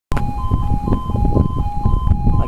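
Level crossing warning alarm sounding two alternating tones, switching about four times a second. It warns that a train is approaching and the barriers are about to lower. A low rumbling noise runs beneath it.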